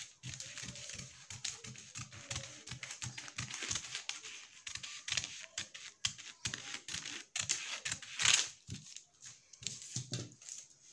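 Scissors snipping through stiff brown pattern paper in a run of short cuts, with the paper crinkling as it is handled. A louder rustle comes near the end.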